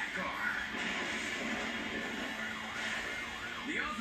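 Sound from a pursuing police car's dashboard camera: steady road and engine noise with a siren, and a voice talking over it.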